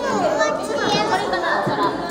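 Young children's voices chattering and calling out over one another, high-pitched and overlapping.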